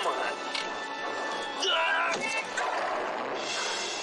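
Film soundtrack: a tense orchestral score under a man's pleading voice, with a sudden knock near the start.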